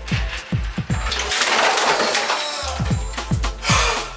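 Ice water poured from a plastic pitcher splashing down over a person's head, a hissing splash of a second and a half starting about a second in. Background music with a steady beat plays throughout.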